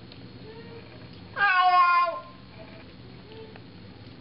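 A Siamese cat meowing once, a loud call of under a second that falls slightly in pitch as it ends, with two faint short calls before and after it.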